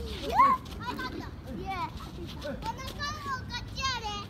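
Young child's high-pitched voice in short squeals and chatter, the loudest a rising squeal about half a second in, with lower voice sounds underneath.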